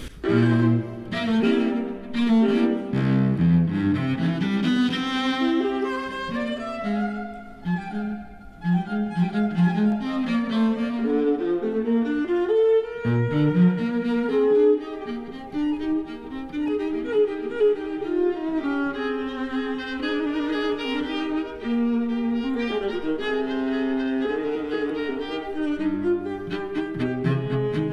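A Stradivari cello and a violin playing a classical duet, the notes changing quickly.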